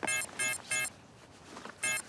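Electronic alert beeping: quick beeps about three a second, a pause of about a second, then the beeping starts again near the end. It is the signal of an incoming alert message.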